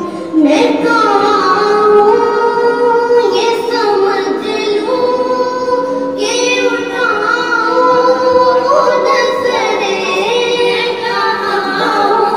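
Women singing an Urdu naat, a devotional poem in praise of the Prophet, in long held melodic phrases, each new line starting about every three seconds.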